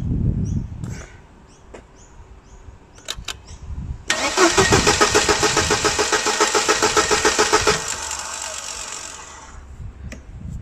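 1999 Mercedes-Benz C180 (W202) four-cylinder petrol engine cranked on the starter about four seconds in, turning over in an even pulse of about five to six beats a second for nearly four seconds, then dying away without running. This is the crank-no-start fault still there after a new crankshaft position sensor has been fitted and code P0335 cleared.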